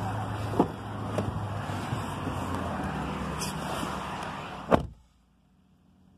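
Steady outdoor rumble with a couple of small clicks from the pickup's door latch early on. Then the GMC Sierra's door shuts with one sharp slam near the end, and the sound drops away to the near silence of the closed cab.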